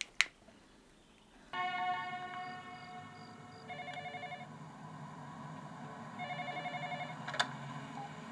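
Telephone ringing: a sudden ring about a second and a half in, then two short trilling bursts a couple of seconds apart. A sharp click comes just after the start and another near the end.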